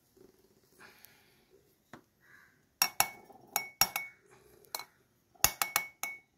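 Metal ice-cream scoop clinking against a glass sundae glass as ice cream is knocked off into it: sharp clinks with a short ring, in quick runs from about three seconds in.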